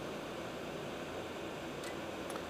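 Steady, even hiss of room tone, with a faint click near the end.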